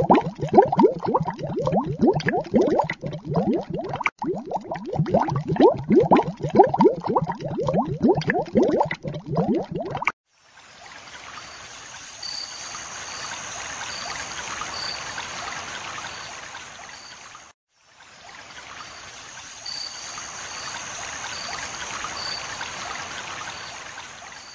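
Water bubbling and gurgling, a dense run of low bubble sounds, for about the first ten seconds. It then switches abruptly to a steady rushing-water hiss that swells and fades, breaks off for a moment and starts again.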